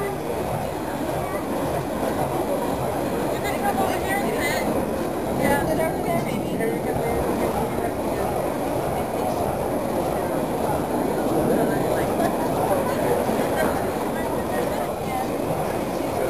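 Indistinct, low voices of people talking over a steady noisy rumble that holds an even level throughout.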